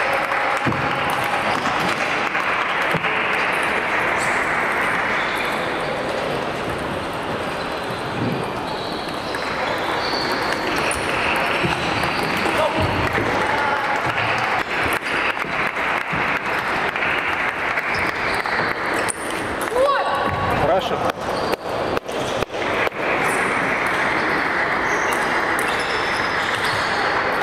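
Table tennis ball clicking off bats and the table, with a quick run of hits about three quarters of the way through. Behind it is a steady background of many voices in a large hall.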